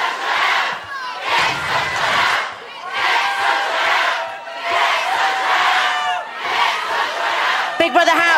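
Large crowd shouting, the noise swelling and dropping in waves every second or two.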